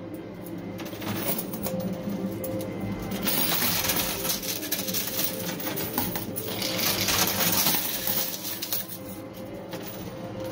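Quarters clattering and clinking inside a coin pusher machine as the pusher shelf slides them along and dropped coins land on the pile, over steady background music. The clatter is sparse at first, thick from about three seconds in, and thins out again near the end.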